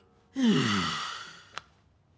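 A man's breathy sigh, its pitch falling steadily, lasting about a second. A single short click follows near the end.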